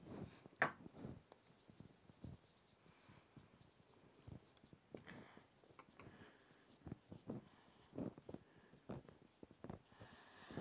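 Faint squeaks and taps of a marker pen writing letters on a whiteboard, in short irregular strokes.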